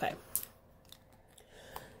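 Small plastic makeup packaging being handled: a sharp click shortly after the start and a fainter click near the end, in an otherwise quiet stretch.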